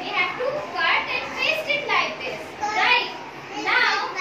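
Young children's voices talking, with continuous chatter and speech throughout.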